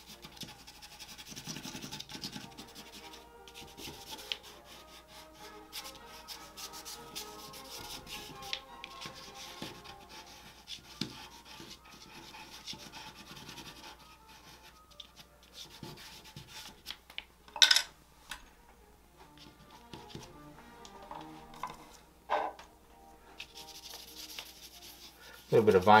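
Compressed charcoal scratching and rubbing over gesso-textured drawing paper, rough and irregular as the stick drags across the raised texture. Two sharper knocks stand out in the second half.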